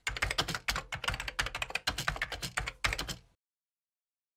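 Computer keyboard typing sound effect: a rapid run of keystrokes for about three seconds, then it stops.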